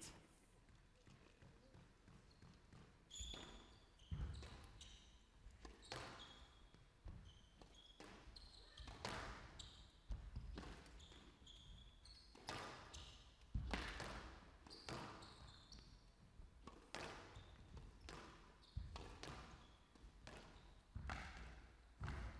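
Squash rally: the hard rubber ball is struck by rackets and smacks off the walls in a run of irregular sharp hits, while court shoes give short squeaks on the floor. The whole rally is fairly faint.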